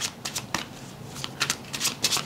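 Tarot deck being shuffled by hand: irregular short bursts of cards slipping and slapping against each other, a few each second.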